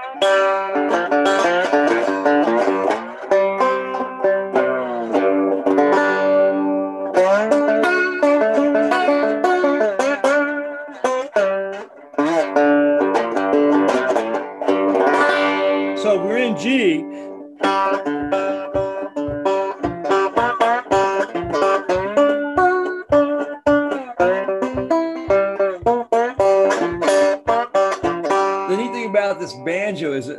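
Deering six-string banjo fingerpicked solo, a run of ringing picked notes with a few that glide in pitch about halfway through. In the second half a low bass note repeats steadily about twice a second under the melody.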